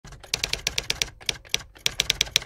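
Typewriter-style typing sound effect: a quick run of sharp key clacks, about eight a second, with a short pause a little past the middle.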